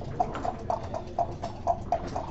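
Backgammon dice being shaken in a dice cup: a steady rattling rhythm of about four sharp strokes a second.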